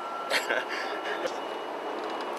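City street background noise: a steady traffic hum with a faint steady high whine and a brief hiss about a third of a second in.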